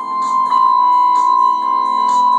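Electronic keyboard playing sustained chords, with a bright high note held over them and the lower notes moving to a new chord right at the start. A soft, regular high ticking beat runs underneath.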